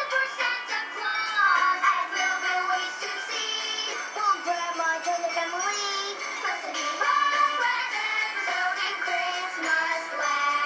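A song with singing and backing music, played on a TV and picked up off its speaker in a small room, so it is thin with no bass.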